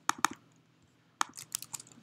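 Scattered computer keyboard and mouse clicks: two or three sharp clicks at the start, a pause, then a quick run of several more in the second half.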